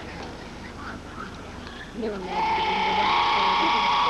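Young players' voices calling out a long, high-pitched cheer that starts about two seconds in and holds steady, over faint chatter from the field.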